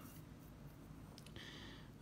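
Near silence: room tone, with a faint soft hiss in the last half second.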